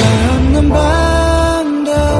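K-pop song with a man singing one long held note over a deep bass line; the bass drops out briefly near the end.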